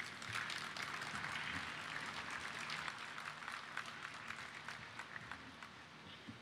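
Audience applauding, dying away gradually.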